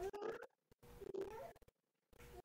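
Two short, faint vocal calls with gliding, wavering pitch, the first right at the start and the second about a second in.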